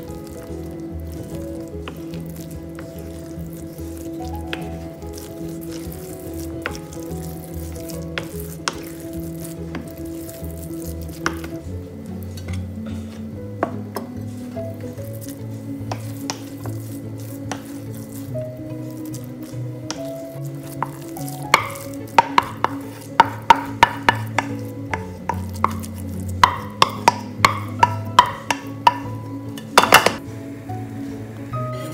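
Wooden spoon working sticky glutinous rice, with soft stirring and scraping and an occasional click. About two-thirds of the way through comes a quick run of sharp knocks as the spoon strikes a stainless steel steamer pot while rice is spooned in.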